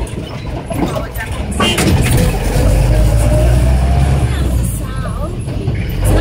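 Trotro minibus heard from inside the cabin, its engine and road noise a steady low rumble that grows louder about two seconds in, with a whine that rises in pitch as the van speeds up. Passengers' voices can be heard faintly.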